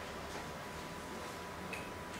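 Quiet room tone with a faint steady hum, a few faint clicks, and one short high beep near the end.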